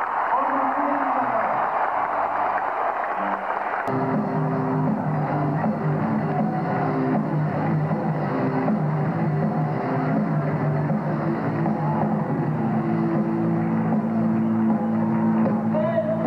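Crowd noise from a large gathering, then about four seconds in a live rock band starts playing suddenly, with electric guitar and drums holding steady low notes over the crowd.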